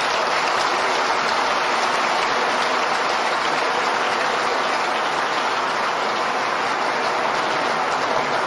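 Steady applause from a large audience: many hands clapping at once, holding at one level.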